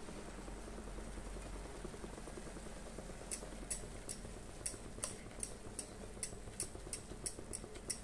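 Instant noodles simmering in water in a pan, a faint steady bubbling, with light ticks of a steel spatula against the pan as the noodles are stirred, about two a second from around three seconds in.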